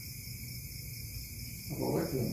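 Quiet room tone with a low steady hum and hiss, no distinct event; a man's voice starts up near the end.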